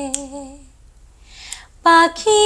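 A woman singing unaccompanied, holding a note with vibrato that fades out under a second in; after a short pause the next phrase starts just before the end.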